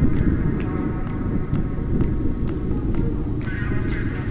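Motorcycle ride on a rough dirt road heard from a helmet-mounted camera: a dense low rush of wind on the microphone with engine and road noise. Faint music with a beat about twice a second runs underneath.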